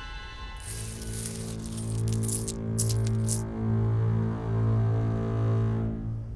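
Coins clinking and jingling as a hand stirs a chest of coins, with several sharp clinks between about two and three and a half seconds in. Under it, low sustained string notes of background music begin about a second in and are the loudest sound.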